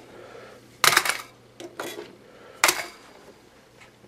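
Handgun magazines being set down onto a pile of pistols and magazines and clacking against each other: a loud clatter about a second in, another near three seconds, and a few lighter knocks between.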